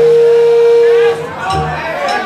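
A steady high tone from the band's PA, held level for about a second and then cut off suddenly, over a low hum from the stage.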